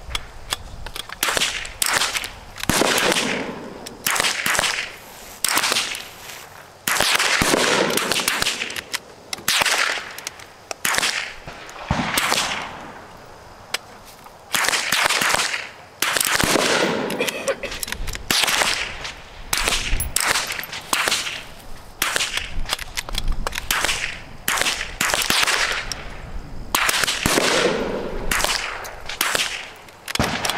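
Rifle shots from a firing line, dozens of sharp reports at irregular intervals of about a second, each with a short echoing tail.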